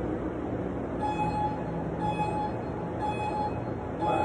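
Gym interval timer counting down to the start: four evenly spaced beeps, one a second, starting about a second in, over a steady hum of background noise.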